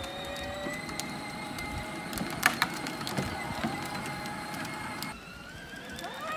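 Battery-powered John Deere Gator ride-on toy's electric motor and gearbox whirring steadily with a faint rising whine as it drives along, with one sharp click partway through.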